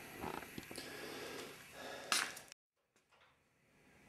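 Faint rustling noise with a brief, louder rustle about two seconds in, then dead digital silence for the last second and a half.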